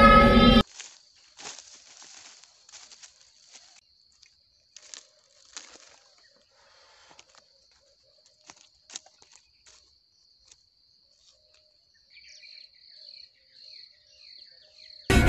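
Background music cuts off about half a second in, leaving quiet outdoor ambience: a steady high-pitched insect drone with faint scattered rustles and clicks. The drone pulses in short beats near the end.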